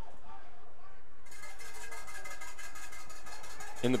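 Steady stadium crowd background; about a second in, sustained musical tones start suddenly and hold over it.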